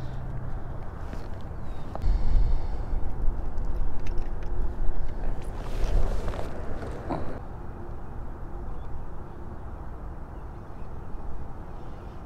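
Wind buffeting the microphone as a low rumble, heaviest from about two to seven seconds in, with a few faint clicks and knocks of fishing gear being handled.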